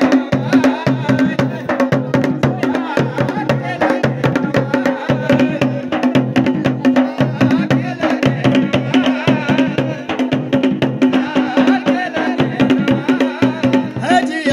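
Live Garhwali dhol and damau drumming for a jagar: dense drum strokes, several a second, in a steady driving rhythm.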